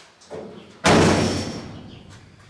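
The driver's door of a bare-metal 1930s truck cab slammed shut: a light knock, then one loud slam just under a second in that fades away over the next second.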